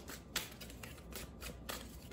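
A tarot deck being shuffled by hand: a run of short card flicks a few tenths of a second apart, the clearest about a third of a second in.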